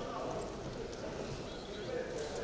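Crowd voices and shouts in a boxing arena during a bout, with scattered light thuds from the boxers moving and punching in the ring.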